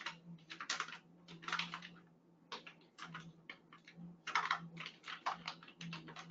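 Typing on a computer keyboard: irregular runs of keystroke clicks with short pauses between words as a line of text is entered. A faint steady low hum runs beneath.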